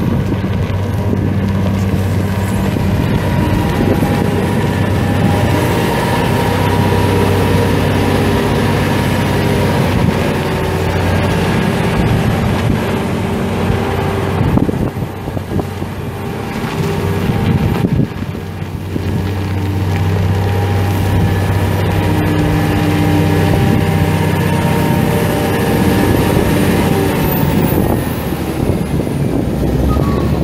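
Komatsu WA500-6 wheel loader's six-cylinder turbo diesel engine running loud and steady, its pitch shifting as the revs change, with two brief dips in level about halfway through.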